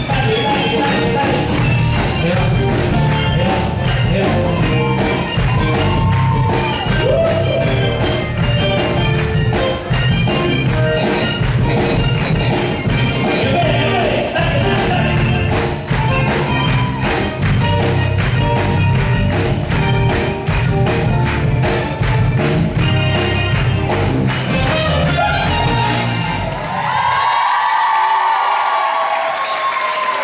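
A live band playing a song with a steady beat, bass and a lead vocal, loud through the club's PA. Near the end the bass and beat stop and only higher held sounds ring on.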